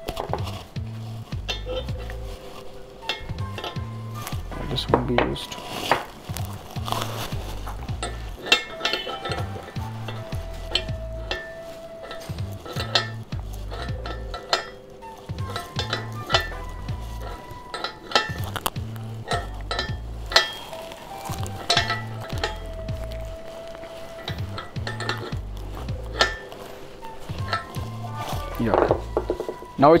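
Repeated metal clinks and scrapes of a steel spanner on a brass valve fitting as it is tightened onto a stainless steel soda maker's gas line, over background music with a steady low beat.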